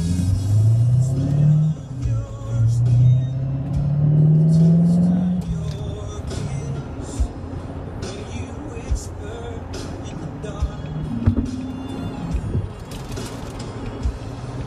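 Chevrolet Corvette C7 Stingray's 6.2-litre V8 heard from inside the cabin, pulling hard: the engine note rises, drops at a gear change a little under two seconds in, then climbs again for about three seconds before easing off to steadier running with road noise and occasional clicks.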